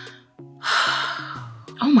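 A woman's breathy gasp, about a second long, over background music with held low notes; she starts to speak near the end.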